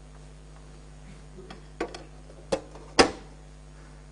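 A few sharp clicks and knocks from hands working the smoke wind-tunnel apparatus while a cylinder is being set into the flow, the last and loudest about three seconds in, over a steady low hum.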